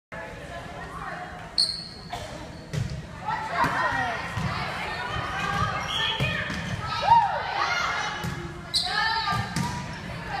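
Volleyball being played in a gymnasium: ball strikes and sharp shoe squeaks on the wooden court, with players and spectators calling out, all echoing in the hall. A short high whistle sounds about one and a half seconds in.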